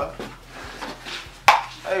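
A single loud, sharp slap about one and a half seconds in, with a few faint low knocks before it and a man's voice at the edges.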